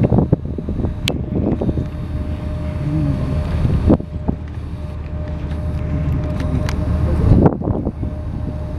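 Steady low drone of a boat's engine, with a faint constant hum above it and wind buffeting the microphone.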